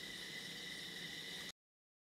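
Faint steady hiss of a voice recording's background noise with a thin high tone in it, cutting off abruptly to dead silence about one and a half seconds in.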